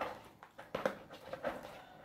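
A few light clicks and taps from handling the cosplay arm armor pieces, its elbow joint freshly bolted together.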